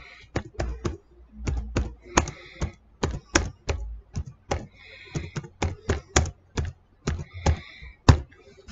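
Quick taps of typing on a smartphone's on-screen keyboard, about two or three keystrokes a second, as a line of text is typed out.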